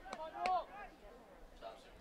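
Faint, distant voices calling out across an open field, mostly in the first second, then quieter.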